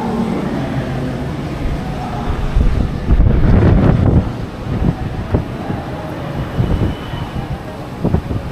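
Low, steady rumble of road traffic with wind buffeting the microphone, louder for about a second and a half around three seconds in.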